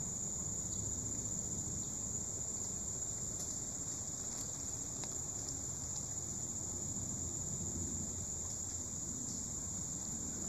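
Steady, high-pitched insect chorus, one unbroken droning tone that holds level throughout.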